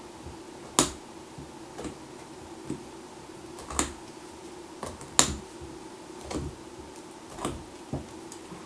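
Bonsai cutters snipping branches of a five-needle pine: a series of sharp, short snips at irregular intervals, three of them louder, as the branches are cut back a little at a time.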